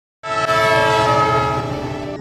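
Train horn sounding one long, steady blast of several notes together, starting a fraction of a second in.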